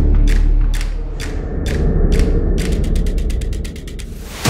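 Clock-like mechanical ticking from a produced sound effect over a low music drone. The ticks come about two a second, then speed up into a fast run of clicks near the end.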